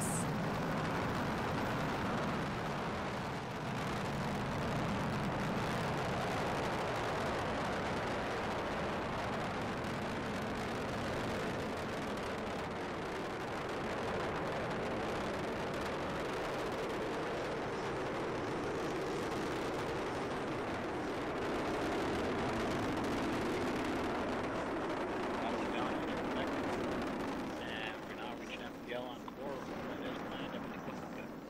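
Delta IV Heavy rocket climbing after liftoff: a steady, continuous rushing noise from its three RS-68A hydrogen-oxygen engines, easing off somewhat near the end.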